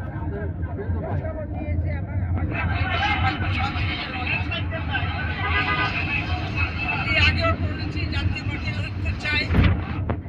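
People talking close to the microphone over a steady low hum, with a short thump near the end.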